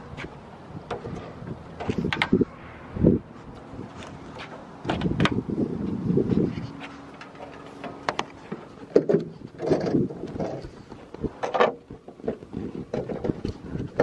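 Handling noise as a Jeep Wrangler TJ's hood is unlatched and lifted: an irregular run of clicks and knocks with stretches of rustling in between.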